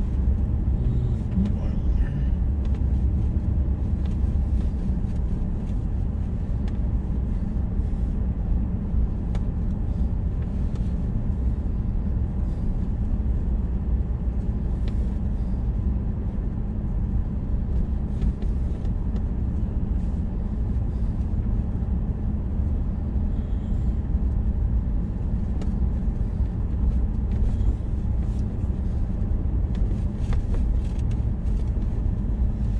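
Steady low rumble of a vehicle's engine and tyres, heard from inside the cabin while it drives slowly along a road.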